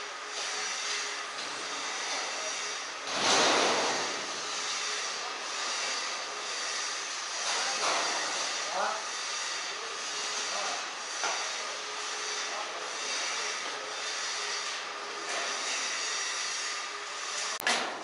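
Steady background hiss with faint voices now and then. A louder rushing noise swells about three seconds in and fades within a second.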